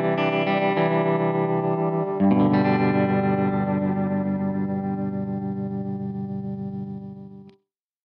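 Closing bars of a song played on guitar with effects: chords, then a last chord struck about two seconds in that rings out and slowly fades before cutting off shortly before the end.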